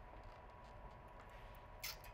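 Near silence: room tone, with a brief hiss near the end.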